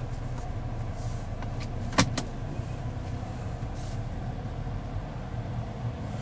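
Nissan Rogue's 2.5-litre four-cylinder engine idling, a steady low hum heard inside the cabin. Two sharp clicks come about two seconds in, a fraction of a second apart.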